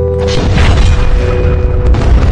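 A deep cinematic boom hit lands about a third of a second in. It starts with a rushing burst of noise and carries on as a low rumble over a sustained music drone.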